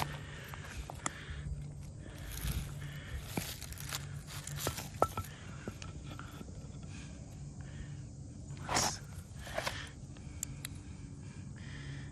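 Footsteps and rustling through grass, ivy and leaf litter, with scattered light clicks and two louder brushes about three quarters of the way through.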